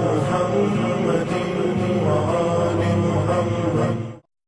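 Intro music of a chanting voice over a steady low drone, dense and sustained, stopping abruptly at the very end.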